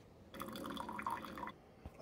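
Keurig K-Slim coffee maker dispensing descaling solution into a plastic measuring jug: a brief trickle and drip of liquid lasting about a second, then it stops.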